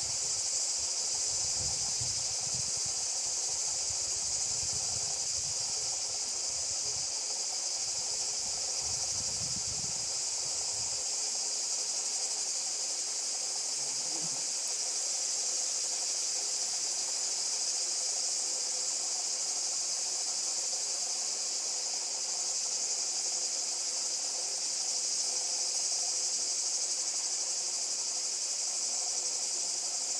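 Continuous, unchanging high-pitched insect buzzing, a dense summer chorus. A low rumble runs underneath for the first ten seconds or so, then fades out.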